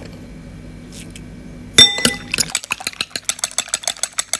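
Eggs beaten with a utensil in a bowl: one sharp, briefly ringing clink against the bowl about two seconds in, then a fast run of light clinks as the egg, water and salt mixture is whisked.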